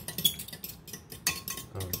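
Kitchen utensils clinking against dishes: a quick, irregular run of light clicks and clinks, one louder clink just after the start.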